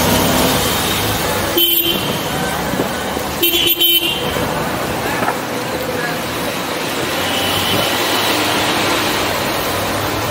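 Busy city road traffic, a steady mix of engines and tyres, with vehicle horns tooting twice: a short toot about one and a half seconds in, and a longer, broken toot about three and a half seconds in.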